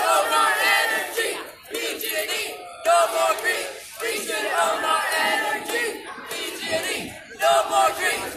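A crowd of protesters chanting together in short shouted phrases, each a second or two long, with brief breaks between them.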